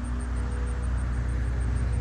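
Steady low engine rumble with a constant hum, typical of construction machinery or a truck idling at the gas-main dig, with a faint high ticking about six times a second over it.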